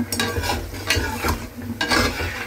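Pakoras sizzling as they deep-fry in hot oil in a karahi, while a slotted metal spoon stirs them, scraping and knocking against the pan several times.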